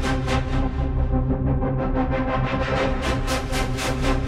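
Steinberg X-Stream spectral synthesizer preset played from a keyboard: a sustained electronic texture with a pulsing high shimmer, about four pulses a second. Its top end dims about a second in and brightens again near the end.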